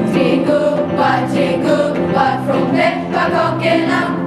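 A school choir of young voices singing a Swedish Lucia song, in sustained sung phrases.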